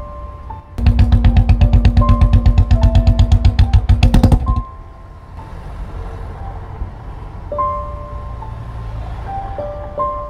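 Motorcycle engine running with a rapid, even beat of about nine pulses a second, then cut off suddenly about halfway through. Soft piano music plays throughout.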